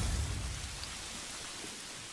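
Anime sound effect of blood spraying from a sword wound: a steady hiss that slowly fades.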